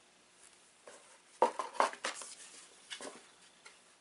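A few short clicks and light knocks from objects being handled by hand, grouped about a second and a half in, with a couple more around three seconds.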